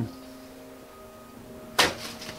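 A single short, sharp whoosh near the end, an arrow loosed from a longbow, over faint sustained background music.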